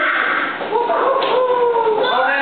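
Young children's voices calling out in a drawn-out chant, with one long held note sliding slowly down in pitch through the second half.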